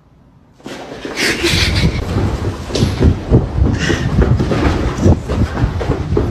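About half a second in, a sudden loud, rough run of uneven thumps and rumbling starts and keeps going: a handheld phone jostled by someone running fast, footfalls and handling noise on its microphone.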